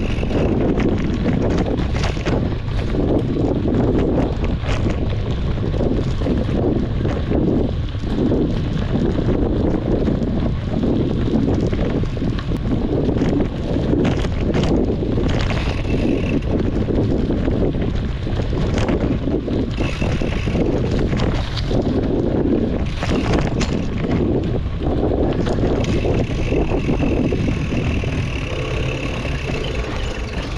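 Steady wind rush on an action camera's microphone from riding a mountain bike downhill on dirt singletrack, with frequent rattles and knocks from the bike over bumps.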